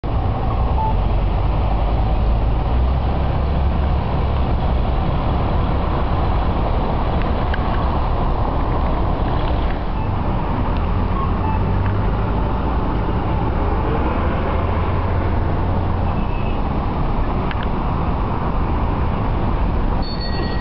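Steady low rumble of outdoor street traffic noise, with a few faint clicks.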